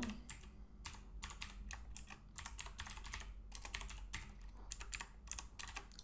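Typing on a computer keyboard: a run of quick, irregular keystroke clicks.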